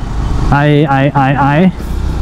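A man's voice stammering "I, I, I" over the steady low rumble of a motorcycle riding in traffic.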